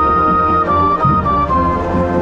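Marching band playing, with brass to the fore: a high held melody note steps down a few times about halfway through, over a steady low bass.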